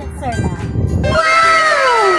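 Uneven low rumbling of wind on the microphone for about a second, then one long pitched call that rises briefly and glides steadily downward.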